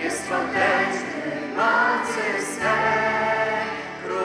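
A choir singing a hymn in held, changing notes.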